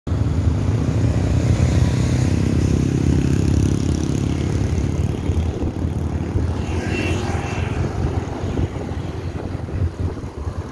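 Motorbike engine running while riding along a road, with road and wind rumble. A steady engine note stands out in the first half, then gives way to a rougher rumble after about five seconds.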